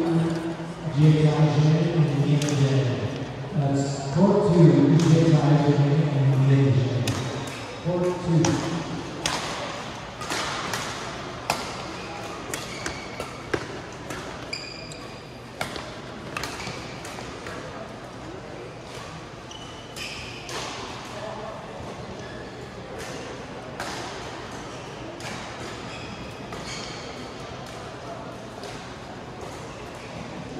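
Badminton rally: a string of sharp racket hits on the shuttlecock, irregularly spaced about a second apart, with brief squeaks of court shoes on the floor, in a large sports hall. Voices talk over the first part.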